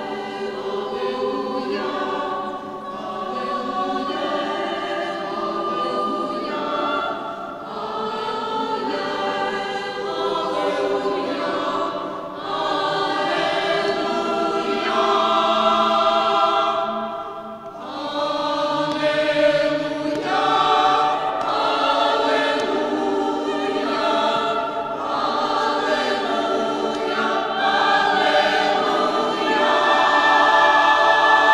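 A choir singing sacred music in a church, with long held chords and short breaks between phrases.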